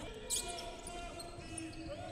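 Faint sound of a basketball being dribbled on a hardwood gym court, over a steady low hum of the hall, with one short sharp sound about a third of a second in.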